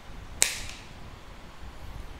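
A single sharp click about half a second in, with a brief ringing tail, from handling a telescopic fishing rod.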